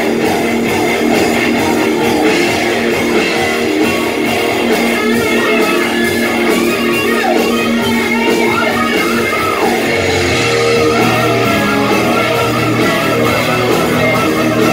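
A rock band playing live, electric guitar to the fore over a steady beat; a deep low note comes in about ten seconds in.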